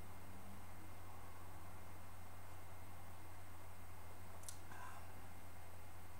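Quiet room tone with a steady low hum, broken only by one faint click about four and a half seconds in.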